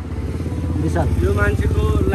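Motorcycle engine running steadily close by, a low pulsing rumble, with a person's voice over it about a second in.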